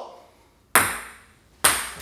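A table tennis ball landing twice on a hard surface, each impact a sharp click with a short ringing tail, the first about a second in and the second near the end.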